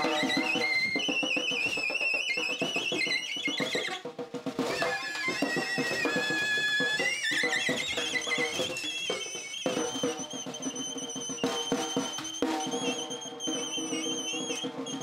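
Alto saxophone holding high, wavering squealed tones that slide between pitches, over a snare drum played with bare hands, with dense rattling hits in the first few seconds. Free-improvised noise music.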